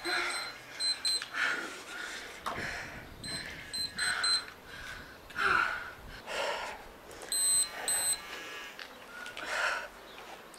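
A workout interval timer beeping short high beeps in clusters of two or three, near the start, about three and a half seconds in and again about seven and a half seconds in. Under the beeps a woman breathes hard from exercise, about one breath a second.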